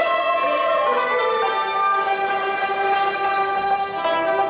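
Chinese traditional orchestra playing a passage of long held notes, with a pipa among the instruments.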